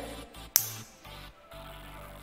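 Quiet background electronic music with low bass notes that change in steps, and a single sharp click a little over half a second in.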